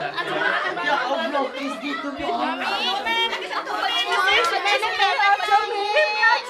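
Several women crying and wailing in grief over one another amid a crowd's overlapping voices, with high, wavering cries about three seconds in and again near the end.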